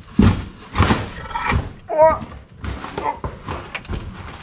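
Cylinder head being lifted off the engine block: several separate metal clunks and knocks as the heavy head is worked free and carried away.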